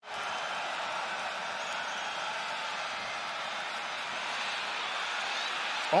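Steady noise of a large stadium crowd during a football play, after a brief drop-out right at the start.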